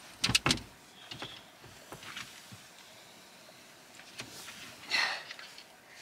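Campervan fold-out bed being rearranged by hand: a quick cluster of sharp knocks and clatters as the folding frame and cushions are shifted, a few lighter knocks after, then soft rustling and dull thumps of foam cushions being laid into place near the end.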